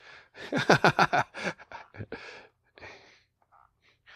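A man laughing in a quick run of short bursts, tapering into a few breathy exhalations.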